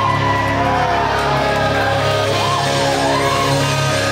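Live rock band playing loud in a large room: electric guitar, bass guitar and drum kit together.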